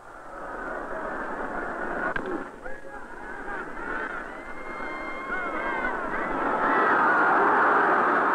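Ballpark crowd of many voices chattering and calling, swelling to loud cheering in the last couple of seconds as the ball is chased. A brief sharp crack comes about two seconds in, the bat hitting the ball.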